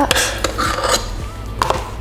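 A spoon scraping soft cream cheese out of its tub, with a light knock near the end, over quiet background music.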